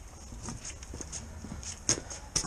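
Footsteps walking across concrete paving slabs, a few irregular sharp steps with the loudest near the end.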